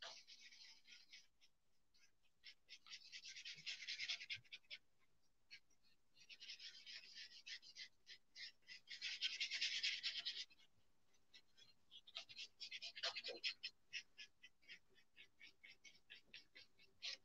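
Paintbrush scratching across a painting on paper in bursts of rapid short strokes, with brief pauses between the bursts: dry-brushing the textured petals of a teddy bear sunflower.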